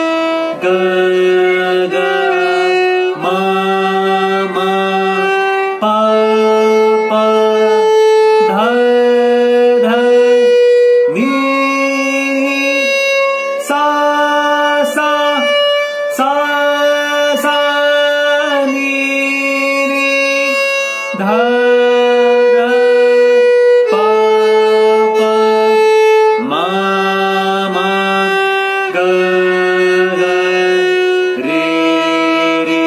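Violin bowed slowly through a beginner alankar exercise of Indian classical music, each note of the scale played twice. The pairs of held notes climb step by step, come back down to the starting note, then begin to climb again near the end.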